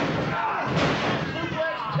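Wrestlers landing hard on the ring mat about a second in as one is thrown over, a single heavy slam, with shouting voices around it.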